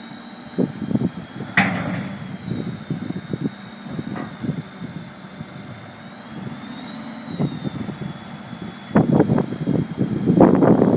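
Succi-Lift SR5 hooklift tilting its bin rearward, driven by the truck's idling engine through its hydraulic pump: a steady high whine over the engine, the whine rising and falling back about seven seconds in. A sharp metallic clank comes near two seconds in, with scattered knocks, and a burst of rattling and knocks from the bin near the end.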